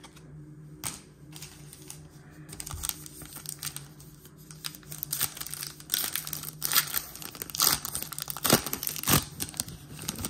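Foil trading-card pack wrapper being torn open and crinkled by hand. The crackling builds, with the loudest sharp tears and crinkles in the second half.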